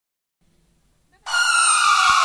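Silence, then a little over a second in an electronic synthesizer tone starts abruptly and slides slowly down in pitch: the opening sweep of a DJ dance remix.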